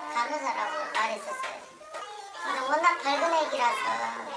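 Speech only: a woman's voice speaking Korean.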